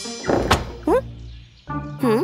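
Cartoon sound effects over soft background music: a single thunk about a quarter of the way in, followed by a short rising pitched glide, and a swooping pitched sound near the end.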